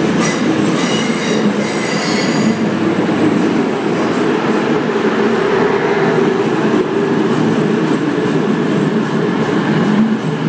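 East Midlands Trains Class 222 Meridian diesel multiple unit pulling out past the platform, its underfloor diesel engines running under power as the coaches go by close up. High wheel squeal sounds over the first couple of seconds, then a steady loud rumble as the train keeps passing.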